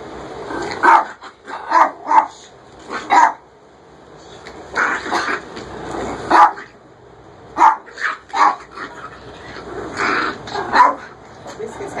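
A toy Pomeranian barking in play at a broom: a string of short, sharp barks coming in quick clusters of two or three.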